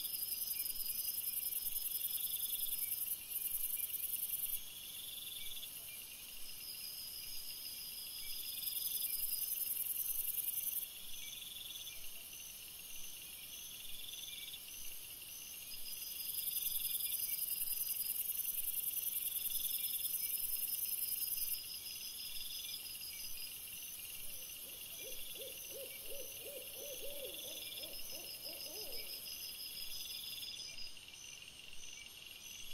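Night insects chirping steadily in a high, evenly pulsing chorus, joined about three-quarters of the way in by a quavering, wavering hoot of an owl lasting a few seconds.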